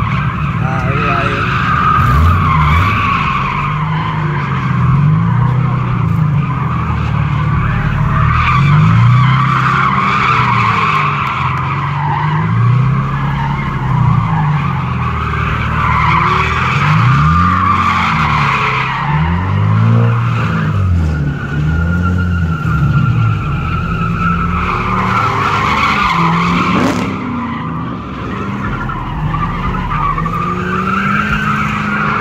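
A car spinning donuts: its tyres squeal almost without a break while the engine revs rise and fall again and again.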